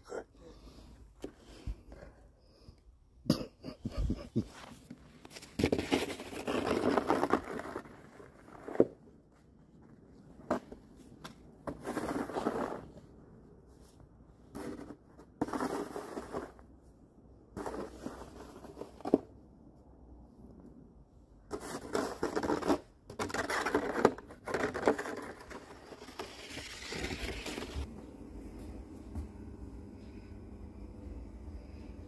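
Snow shovel scraping and scooping packed snow in irregular strokes of about a second each, with a few sharp knocks in between.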